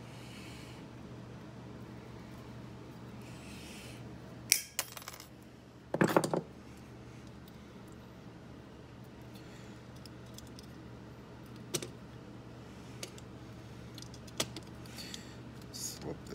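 Small steel parts and hand tools clinking on a workbench as a key blank is handled and fitted to an antique mortise lock. There are a few sharp clicks about four and a half seconds in and a louder metallic clatter with a short ring about six seconds in, then scattered light ticks, all over a steady low hum.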